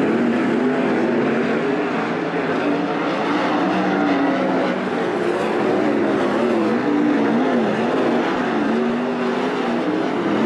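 Field of 410 sprint cars racing on a dirt oval, their 410-cubic-inch V8 engines running at high revs. Several engine notes overlap, each rising and falling in pitch as the drivers get on the throttle and lift for the turns.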